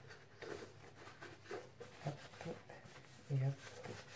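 Faint rustling of a paper tissue rubbed over a plastic nasal rinse pot to dry it, with a few light clicks of the plastic being handled. A brief voice sound a little after three seconds in.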